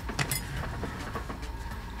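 Light clatter and a few sharp clicks of objects being handled and moved on a workbench, loudest just after the start, then faint scattered ticks, over a steady low hum.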